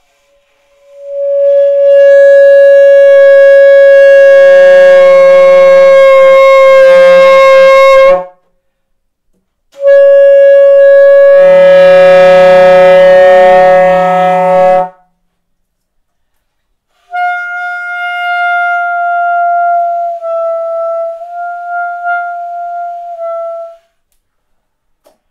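Solo alto saxophone holding long notes. First come two loud sustained notes of about seven and five seconds, each with a second, lower tone sounding beneath it. After a short pause comes a softer, higher note held for about six seconds that dips slightly in pitch a few times.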